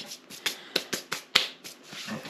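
Plastic slow cooker liner crinkling as it is handled: a run of sharp, irregular crackles, about ten in two seconds.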